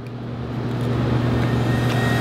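A low, steady rumbling hum under a rushing noise that swells gradually louder: a dramatic riser sound effect laid under the moment of tasting.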